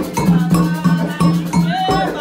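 Candomblé ritual drumming with a metal bell ringing a steady, repeating pattern, and a woman's singing voice over it.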